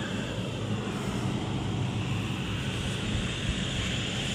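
Steady low rumble of outdoor neighbourhood noise with no distinct events, in an area the speaker says is noisy from house-construction work going on nearby.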